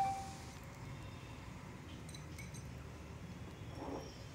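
Faint stirring of a wire whisk through biscuit-and-milk paste in a plastic bowl, with a few light clinks about two seconds in.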